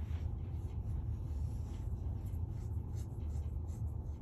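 Irregular scratching and rustling of something being handled close to the microphone, over a steady low rumble.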